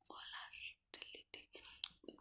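A faint, breathy whisper from the narrator, followed by several small mouth clicks in the pause between spoken phrases.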